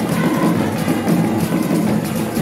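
Ewe traditional drum ensemble playing on barrel drums, a dense, steady groove.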